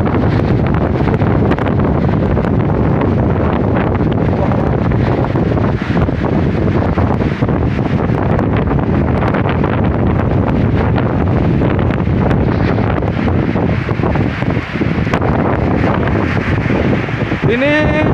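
Whirlwind winds and wind-driven rain: a loud, steady rush, with gusts buffeting the microphone.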